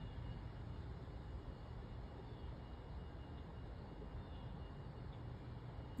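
Faint, steady outdoor background rumble with no distinct events.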